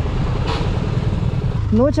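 Motorcycle engine idling, a steady low rumble, with a man's voice starting near the end.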